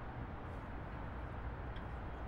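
Steady, faint background noise with a low rumble, and no distinct event standing out.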